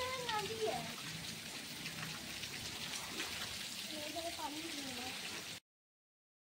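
Steady rain falling on standing floodwater, with faint voices in the background. The sound cuts off abruptly near the end.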